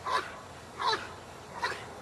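Dog whining in short high-pitched cries while gripping a bite sleeve, three cries evenly spaced about three-quarters of a second apart, each rising and falling in pitch.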